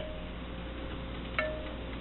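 A metal utensil clinks lightly against a stainless steel pot twice, about a second and a half apart. Each clink leaves a faint ringing tone.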